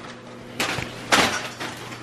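Cardboard box and plastic packaging being handled and scraped as a bubble-wrapped exhaust header is pulled out of it, with two short swishing scrapes about half a second and a second in.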